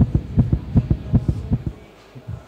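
Heartbeat sound effect: a fast run of deep lub-dub double thumps, about five pairs, that stops shortly before the end.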